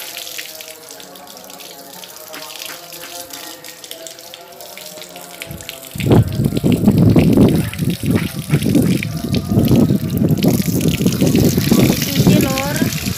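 Tap water running from a hose into a plastic basket of turmeric rhizomes as they are rubbed clean by hand. About halfway through the water gets suddenly much louder and splashier.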